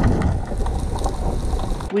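Underwater sound picked up by a camera in a waterproof housing: a steady, muffled rush of water with a strong low rumble and a faint hum. It cuts off suddenly near the end.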